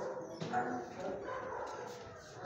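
Dogs in kennels barking and whining, a few short calls at a low level.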